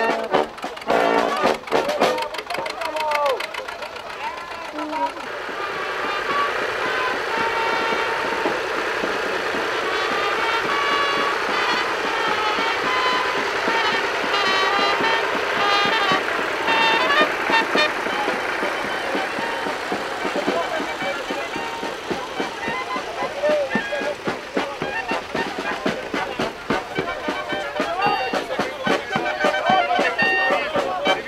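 Small brass band with tuba and trumpets playing on the march, with people's voices over it. The band is steadiest and fullest through the middle, and talking voices come to the fore near the start and toward the end.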